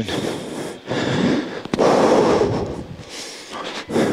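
Heavy breathing close to a microphone: two or three long, noisy breaths, the middle one the longest. It is someone catching their breath after running a drill.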